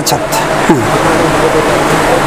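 Brief snatches of a man's voice over a loud, steady rushing background noise.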